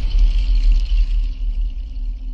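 Channel ident sting: a loud, sustained deep bass rumble with a thin high shimmer above it, the shimmer fading near the end.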